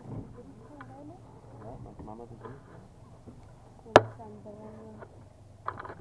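Indistinct voices of passengers aboard a river boat over a low steady hum, broken by one sharp knock about four seconds in and a lighter one shortly before the end.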